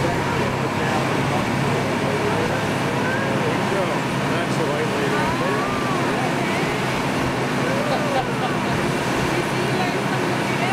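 A charter fishing boat's engines running steadily under way at speed, with the rush of wind and the churning wake all through; voices come faintly through the noise.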